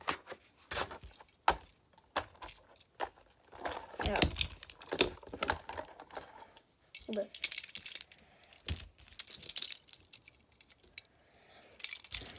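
Small die-cast metal toy cars clicking and clinking as they are handled and set down together, a string of irregular light taps.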